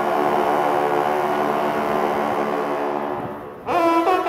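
Ensemble of French hunting horns (trompes de chasse) holding a long sustained chord that fades away about three and a half seconds in, then coming back in together on new notes just before the end.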